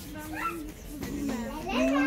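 A small child's voice making a few drawn-out vocal sounds without clear words, the last one louder and rising in pitch near the end.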